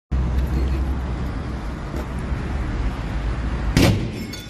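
Low rumble of a handheld camera being carried quickly, with a few thuds of hurried footsteps; the loudest knock comes just before the end.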